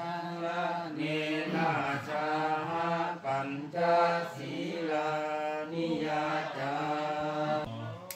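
Buddhist monks chanting Pali blessing verses in unison into a microphone, a continuous recitation of held notes broken by short pauses for breath.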